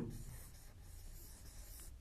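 Faint rubbing of a marker pen writing on a whiteboard.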